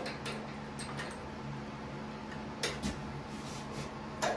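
A few light clicks and taps as a threaded knob bolt and washer are handled and fitted against a tractor's bonnet panel, the loudest pair a little before three seconds in, over a steady low hum.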